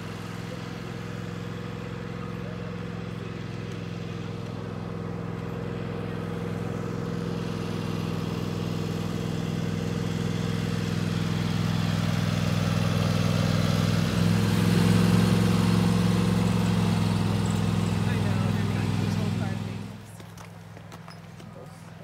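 An engine running steadily at a constant pitch, with a low hum that grows gradually louder and then drops away sharply about 20 seconds in.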